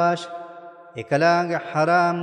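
A man chanting Quranic Arabic in the melodic recitation style, holding long steady notes. One phrase fades just after the start and the next begins about a second in.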